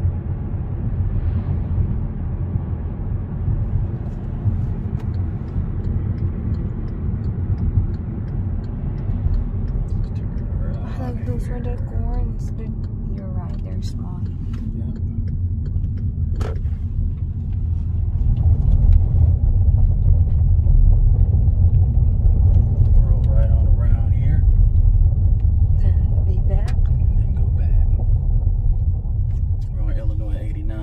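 Steady low road and engine rumble of a moving car, heard from inside the cabin, growing louder a little past halfway, with faint talking now and then.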